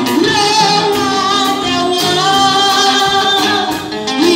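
Worship song sung by a woman into a microphone, holding long, wavering notes over instrumental accompaniment.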